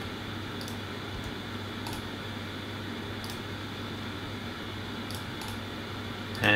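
Quiet room tone with a steady low electrical hum and about five faint, sharp computer mouse clicks spread through it, as pen-tool points are placed.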